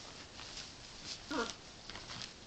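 A macaw rocking and treading on a blanket, its wings and feet rustling and scuffing the cloth in quick irregular scrapes, with one short low wavering call about a second and a half in. It is mating behaviour, the bird pressing against the blanket as though it were a female.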